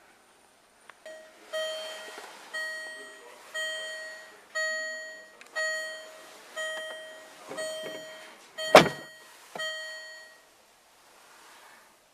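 Jaguar F-Type's warning chime sounding about once a second, a clear beep repeated about ten times, stopping near the end. A loud single thunk comes near the end, while the chime is still going.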